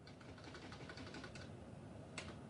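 Faint, rapid, irregular clicking of typing on a keyboard.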